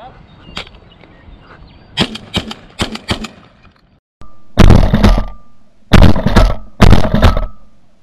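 Three loud shotgun shots fired in quick succession about halfway in, the second a little over a second after the first and the third under a second later. Each blast has a short ringing tail. A few fainter sharp clicks come before them.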